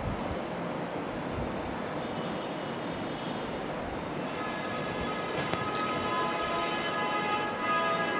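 Steady background hiss, with soft background music of long held notes fading in from about halfway.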